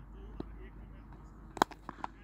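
A cricket bat striking a tennis ball: one sharp, loud crack about one and a half seconds in, followed by a fainter knock.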